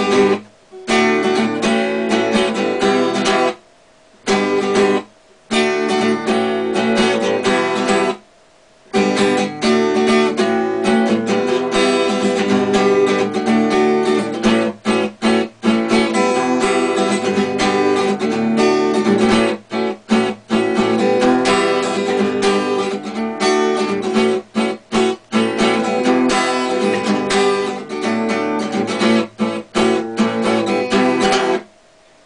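Taylor acoustic guitar playing an original riff, with a few short pauses in the first nine seconds and then without a break.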